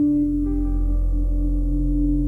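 Background music: a sustained keyboard or synthesizer chord over a deep bass note. A new chord begins right at the start, with another note joining about half a second in, and it holds steady throughout.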